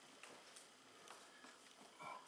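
Near silence, with a few faint clicks and taps as the fan's frame is handled and repositioned against the case.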